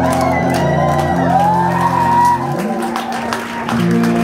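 Live rock band playing loudly: sustained distorted guitar and bass chords that change about two and a half seconds in, with cymbals, and voices shouting over the music.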